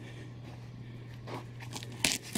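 Faint handling of a taped cardboard shipping box, with one light scrape about a second and a half in, over a steady low hum.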